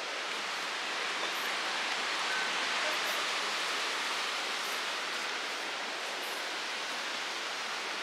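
Steady rushing of river water: an even, unbroken hiss with no distinct events.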